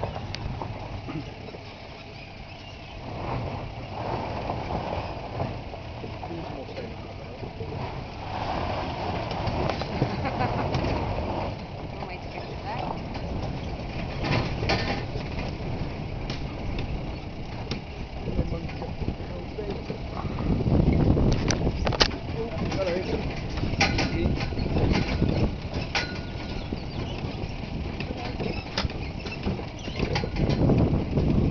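Truck driving slowly along a rough dirt track: engine noise with knocks and rattles from the bumps, loudest about twenty seconds in.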